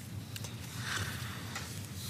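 Faint rustle of paper and a few soft clicks as book pages are turned to look up a verse, over a steady low hum.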